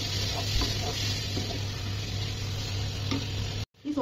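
Soya chunk curry sizzling in a pan as a spatula stirs in a cup of water just added to the gravy, with a few light scrapes, over a steady low hum. The sound cuts out briefly near the end.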